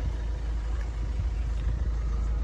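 Hyundai i30's engine idling steadily, a low, even sound.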